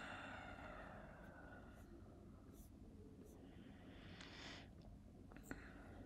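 Near silence: room tone, with two faint soft hisses, one at the start and one about four seconds in, and a tiny click near the end.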